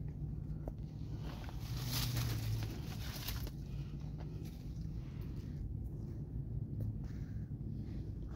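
Low steady rumble with a few soft rustles, the clearest about two seconds and three and a half seconds in.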